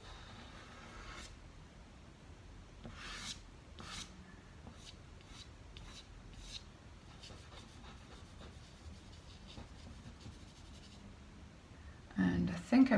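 Soft pastel rubbed and stroked across sanded pastel paper: faint scratchy strokes, with a couple of louder ones about three and four seconds in.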